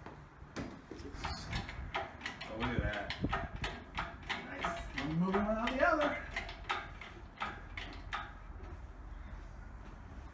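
Irregular clicks and knocks of hand work on the car and the engine hoist, with a short bit of voice around the middle, the loudest a rising-then-falling call about five seconds in.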